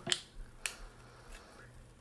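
Two light clicks about half a second apart from an opened aluminium beer can being handled in the hand, fingernails or fingers against the can.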